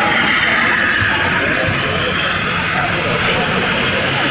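OO gauge model train running along the layout's track close by, a steady rushing hiss of wheels and motor that eases off slightly toward the end, over a background murmur of voices.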